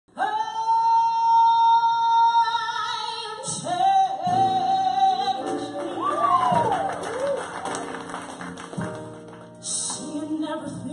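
A woman sings a long held note with a live piano, bass and drum band. The band comes in fuller about four seconds in, under her sweeping vocal runs.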